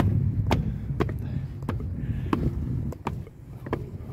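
Footsteps climbing the concrete stairs of a steel railway footbridge, about two steps a second, each one a sharp knock that booms through the structure, over a steady low rumble.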